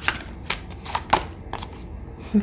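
Tarot cards being handled off-camera: a few sharp, separate card clicks and flicks, roughly half a second apart.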